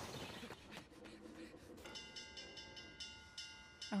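An alarm bell struck in rapid repeated strokes, about six or seven a second, its ringing tones held steady, starting about two seconds in and heard low from an anime soundtrack; before it, a faint rushing noise.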